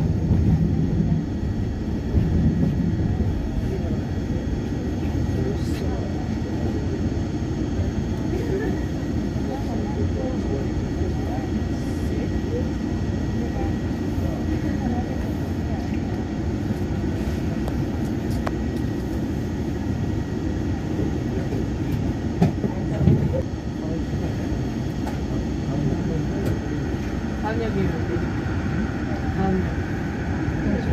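Yongin EverLine light-metro train running along elevated track, a steady rumble of wheels and running gear heard from inside the front car. A couple of sharp knocks come a little over two-thirds of the way through.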